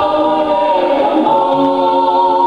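A family choir of men's, women's and children's voices singing a Samoan vi'i, a hymn of praise, in long held notes.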